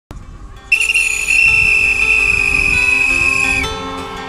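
One long blast on a whistle, about three seconds long, starting just under a second in with a brief trill and then held as a steady shrill tone that stops sharply. Music plays softly underneath.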